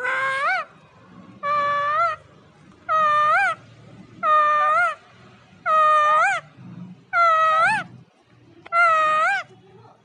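A green ring-necked parakeet calling seven times, evenly spaced about a second and a half apart, each call a loud half-second note that flicks upward at its end.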